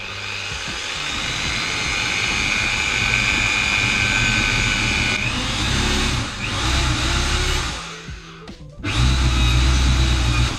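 Small power drill running with a steady whine while boring through the side wall of a plastic storage box. Its pitch sags and wavers as it works. It stops briefly about eight seconds in and then runs again.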